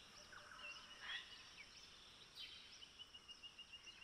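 Near silence with faint distant birds chirping: scattered short high chirps, then a quick run of chirps near the end.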